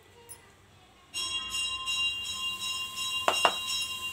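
Bell-like ringing with several steady tones, starting suddenly about a second in and holding on, with two or three sharp clicks near the end.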